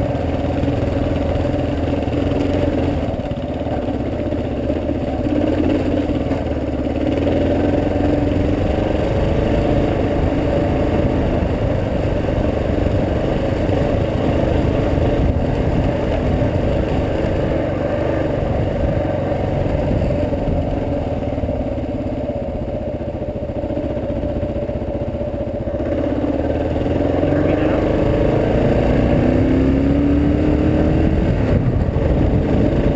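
Dual-sport motorcycle engine running steadily under way on a gravel road, with rough-road tyre rumble and wind noise; the engine note rises near the end as it accelerates.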